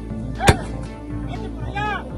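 A single gunshot crack about half a second in, from a firefight, over a steady background music bed. A short wavering pitched sound follows near the end.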